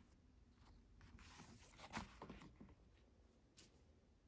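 Faint rustle of leather being handled and turned over on the sewing machine bed, with a soft knock about two seconds in.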